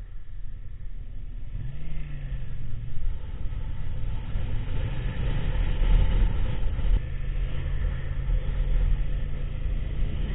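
Motorcycle engine running in traffic under a steady low rumble of wind and road noise. The engine pitch rises and falls once about two seconds in, and a steady engine hum holds through the louder second half.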